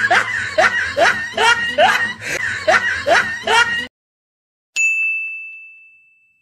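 Laughter in quick repeated rising 'hee' pulses, about three a second, cutting off suddenly about four seconds in. After a brief silence, a single bell ding rings and slowly fades.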